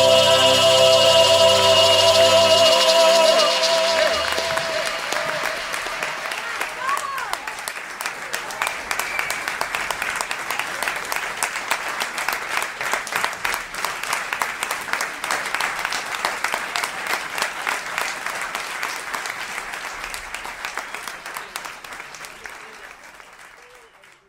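A song ends on a held chord in the first few seconds, and a live audience applauds. The clapping slowly fades away and stops near the end.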